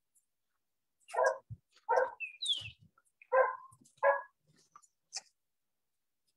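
A dog barking four times, the barks coming about a second in and then roughly once a second.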